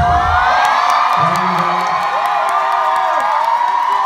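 Concert audience cheering with many high-pitched wavering voices as a live song ends. The band's last notes die away in the first half-second.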